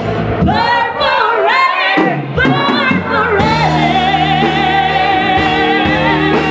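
Female lead vocalist singing wordless sliding runs with vibrato over a live rock band with bass guitar and drums, the band thinning out briefly about two seconds in. From about three and a half seconds in she holds one long note with vibrato over sustained band chords.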